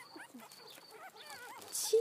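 Young puppies whimpering in short, high, wavering squeaks.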